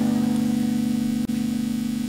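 Keyboard holding one sustained chord, steady and slowly fading, with a brief dropout a little past halfway.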